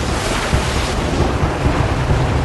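Sea water rushing and splashing in a loud, steady wash with a deep rumble underneath.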